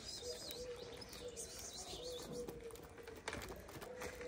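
Faint cooing of a pigeon, a low note repeated in short phrases, with small birds chirping high above it early on and a single sharp click a little after three seconds in.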